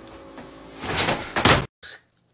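A brief rising rush of noise, then one sharp smack-like hit about a second and a half in, after which the sound cuts off abruptly.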